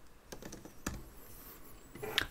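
Computer keyboard being typed on: a handful of faint keystrokes, the loudest a little under a second in.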